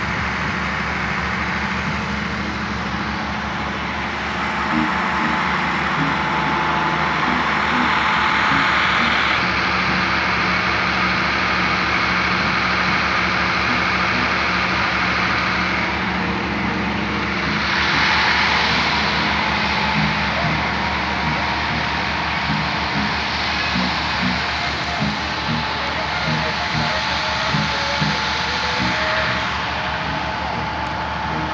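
A steady mechanical drone with a low hum runs throughout, with faint music and short repeated low notes under it in the second half.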